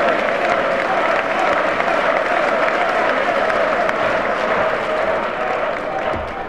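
A chamber full of House members applauding, steady sustained clapping with voices mixed in, easing off near the end.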